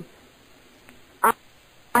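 A pause in the dialogue with only faint background hiss, broken a little over a second in by one short hesitant spoken "I" from a woman.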